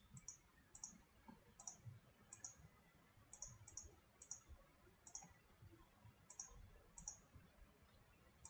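Computer mouse button clicking, about a dozen faint clicks spaced irregularly with some in quick pairs, as faces of a 3D model are selected one after another.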